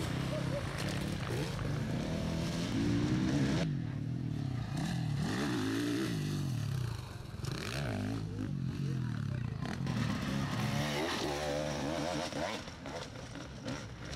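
Enduro motorcycle engine revving up and falling back again and again, its pitch rising and dropping every second or two.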